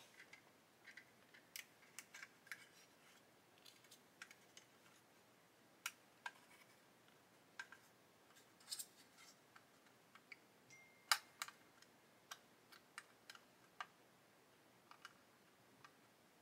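Faint, scattered clicks and taps of small plastic model-kit parts being handled and pressed together, as the cab doors of a 1/35 plastic kit are test-fitted; the sharpest click comes about eleven seconds in.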